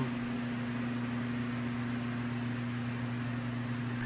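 Steady hum and even hiss of a walk-in flower cooler's refrigeration fans running.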